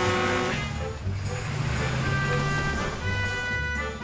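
Animated fire engine's motor running with a steady low rumble as it drives away, under background music.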